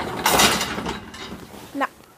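A horse's muzzle right at the microphone: one short, loud rush of breath-like noise lasting under a second, fading out after it.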